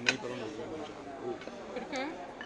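Conversation at a restaurant table, with a sharp click of a metal fork against a ceramic plate just after the start and another, softer one near the end.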